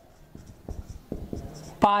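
Marker pen writing on a whiteboard: a quick run of short, irregular strokes and taps as a word is written out.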